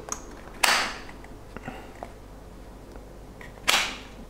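Quiet handling of a 3D-printed plastic chin mount against a motorcycle helmet's chin: a few faint plastic clicks and two short rustling hisses, one about half a second in and one near the end.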